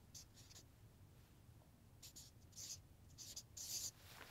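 Marker pen drawing on flip-chart paper: faint, scratchy strokes, a few short ones at first, then a run of quick strokes from about two seconds in, the longest near the end as a line and circle are drawn.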